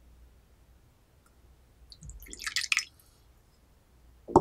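Tea poured from a glass pitcher into a small porcelain cup: a short splash of liquid about two seconds in, lasting under a second.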